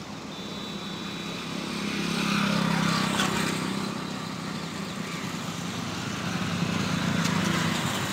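Tractor engine running with a steady low hum that swells about two seconds in and again near the end.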